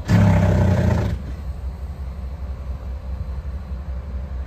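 Mobile crane's diesel engine running under load with a steady low rumble, surging loudly for about a second at the start and then settling back.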